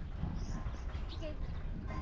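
Wind rumbling on the microphone, with faint voices in the distance.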